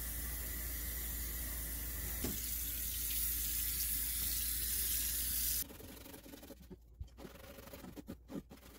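Kitchen faucet running a stream of water onto a rusty cast iron grill pan in a stainless steel sink. The water is cut off suddenly about five and a half seconds in, followed by a few faint knocks.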